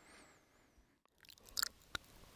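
Faint room tone, with a brief faint rustle about one and a half seconds in and a single sharp click just before the end.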